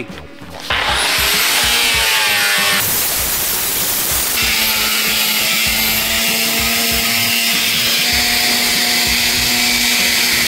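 Angle grinder with a sanding disc grinding mill scale off a steel plate. The motor spins up about a second in and then runs steadily under load against the steel, with the sound changing abruptly twice.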